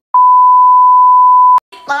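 Censor bleep added in editing: a steady, pure high-pitched tone that breaks for an instant right at the start, then resumes and cuts off suddenly about one and a half seconds in.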